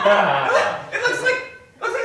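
A person's wordless vocal sounds, fading out about a second and a half in.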